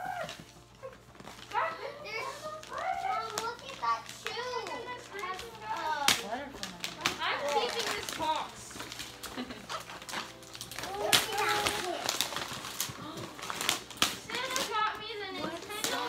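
Young children's voices chattering and exclaiming, with bursts of wrapping paper being ripped open about six seconds in and again around eleven seconds.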